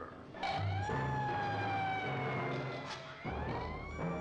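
A wailing siren: its tone rises, slides slowly down for about two seconds, then rises again near the end, over a steady low hum.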